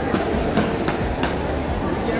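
Busy food court din with faint talk, and a quick run of four light clicks about a third of a second apart.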